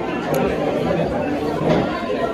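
Indistinct background chatter of several people talking.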